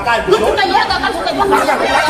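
Several men talking loudly over one another in a heated argument.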